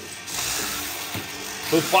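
Small electric motors and gearboxes of toy remote-control battle robots whirring as they start driving across the plastic arena floor: a steady, hiss-like whir that begins a moment in.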